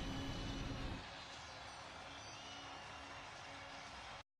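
Steady crowd noise from a packed college football stadium, dropping in level about a second in.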